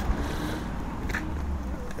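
Low, steady outdoor background rumble, with a faint click about a second in.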